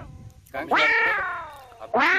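A long meow-like wail starting about half a second in, rising quickly then falling slowly; a second one begins at the very end.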